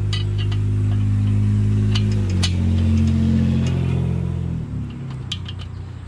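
A motor vehicle's engine running loudly close by, dropping in pitch about two seconds in and fading away near five seconds. Light metal clinks from steel dolly parts being handled.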